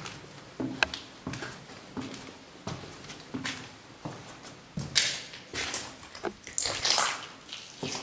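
Footsteps of shoes going down grit-strewn concrete stairs and across a landing, a steady run of knocks with scuffs. Two longer hissing sounds come about five and seven seconds in.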